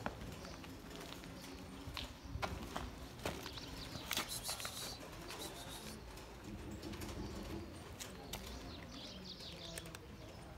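Cat crunching dry kibble, a run of short, sharp crunches clustered a couple of seconds in, then scattered ones.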